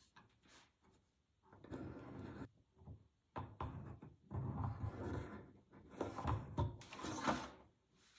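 Handling noise: a series of about five rubbing, scraping strokes, the last ones loudest.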